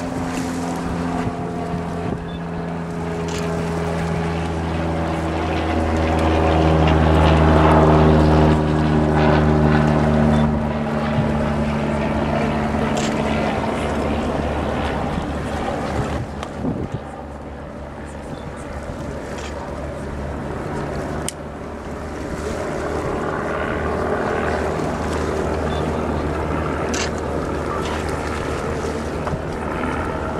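Low, steady engine hum of a passing vessel, swelling to its loudest about eight seconds in and then easing off, with wind buffeting the microphone.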